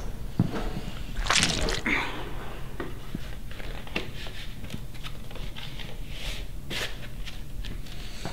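Handling sounds of a vinyl LP and its cardboard sleeve: scattered rustles and light knocks, with a louder burst of rustling a little over a second in, and footsteps.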